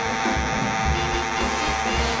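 Big band jazz: a baritone saxophone plays a sustained line over the rhythm section of guitar, drums and low pulsing bass notes.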